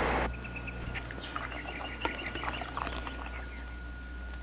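Animal calls: a scatter of short high chirps lasting about three seconds, over a thin steady whine and a low hum.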